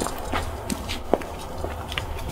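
Footsteps of a person walking on pavement, a few separate steps about half a second apart, over a low steady rumble.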